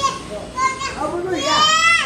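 A toddler's high-pitched voice in play: short squeaky vocal sounds, then a long squeal rising in pitch near the end.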